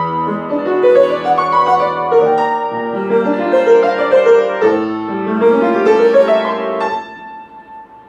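Upright piano played solo: quick runs of notes over held bass notes, climbing in a rising run about six seconds in, then the notes die away into a pause of about a second near the end.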